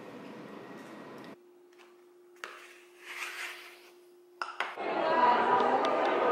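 Quiet kitchen with a steady low hum, a few sharp clinks of a frying pan against a plate and a brief scrape. About five seconds in it gives way to loud, indistinct chatter of a crowded indoor room.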